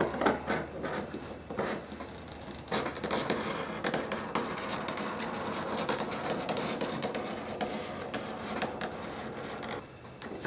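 A sharp craft knife cutting through thick vegetable-tanned leather on a cutting mat: a few short scratchy strokes at first, then a steady run of scratchy cutting from about three seconds in.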